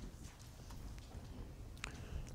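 Faint, scattered small clicks and light rustles over a low room rumble, picked up close by a lapel microphone, with a sharper click near the end.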